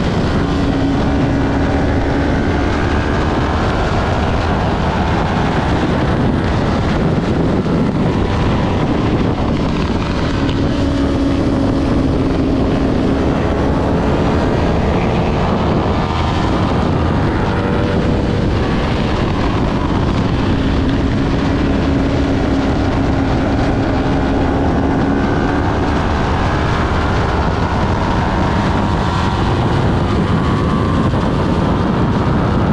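Kawasaki Ninja 400's parallel-twin engine running hard at racing speed, its pitch rising and falling with the throttle and gears, under heavy wind noise on the bike-mounted camera.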